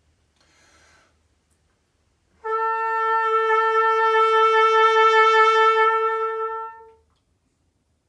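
Trumpet sounding one long held note, taken after a short intake of breath and starting about two and a half seconds in. The note swells a little and then dies away after about four and a half seconds.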